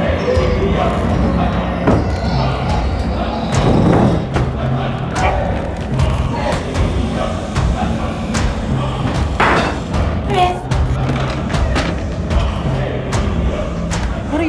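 Tense film-score music with a steady pulsing low beat, over several heavy thuds, the strongest about two, four and nine and a half seconds in. Short choking gasps from a man who is choking on food come in here and there.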